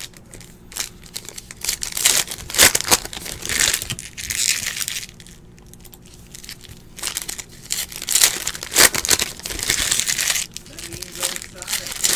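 Foil wrapper of a 2018 Optic baseball card pack crinkling and tearing as it is ripped open and handled by hand, in two bouts of several seconds each.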